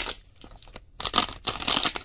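Foil wrapper of a Pokémon Sun & Moon booster pack crinkling and tearing open as it is handled, in several short rustling bursts.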